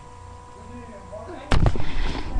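Low steady background hum, then about one and a half seconds in, a sudden run of loud knocks and rubbing as the webcam is grabbed and moved, its microphone taking the bumps directly.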